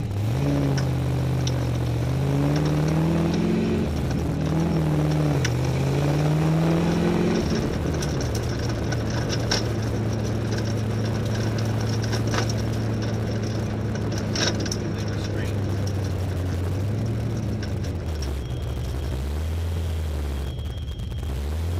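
Race car engine pulling away and accelerating through the gears, its pitch climbing and dropping at each shift, then running at a steady cruise before easing off near the end. A few light knocks sound over the engine.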